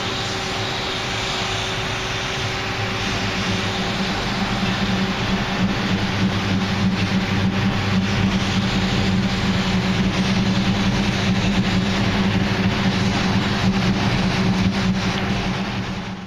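V8 muscle car doing a burnout: the engine held at high, steady revs with the rear tyres spinning on the pavement, growing a little louder after a few seconds and fading out at the very end.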